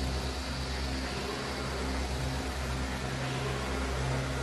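A steady low hum with an even hiss over it.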